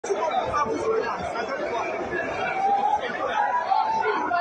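Several people's voices chattering and calling out at the side of a football pitch.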